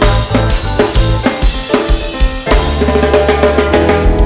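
Live reggae band playing with the drum kit to the fore: repeated bass drum, snare and rimshot hits over a bass line and held pitched notes.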